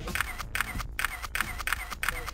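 A camera shutter firing in a rapid burst of crisp clicks, about five or six a second.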